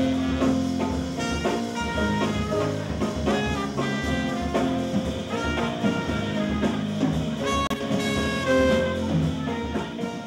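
Trumpet playing a fast jazz lead line of many short notes over a live band with drum kit.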